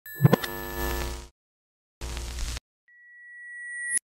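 Electronic logo-intro sting: a ringing, chord-like burst that cuts off after about a second, a shorter second burst about two seconds in, then a steady high tone swelling louder until it stops suddenly.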